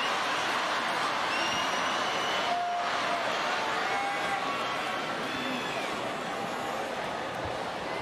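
Large arena crowd noise: a steady wash of many voices, with a few brief higher calls standing out about two to three seconds in.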